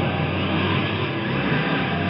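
Heavy rock band recording in an instrumental passage: a dense wash of distorted sound with the bass notes dropped out, coming back just after.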